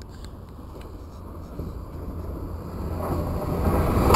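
Great Western Railway express train approaching at speed, a rushing rumble that grows steadily louder and swells sharply in the last second as it reaches the platform.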